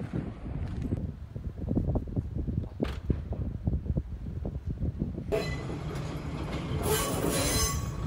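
Kominato Railway diesel railcar rolling slowly through the rail yard, its wheels knocking over the rail joints with a low rumble. From about five seconds in, a high hissing wheel squeal joins and is loudest near the end.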